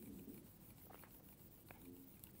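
Near silence, with a few faint ticks of a stylus tapping on a tablet screen as lines are drawn.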